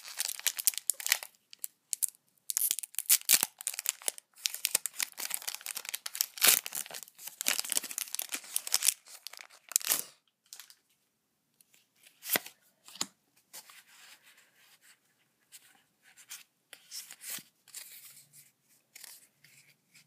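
Foil wrapper of a Pokémon trading card booster pack being torn open and crinkled in the hands, a dense crackling for about ten seconds, then only scattered quieter clicks and rustles of handling.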